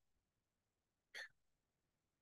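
Near silence, broken by one brief, faint sound about a second in.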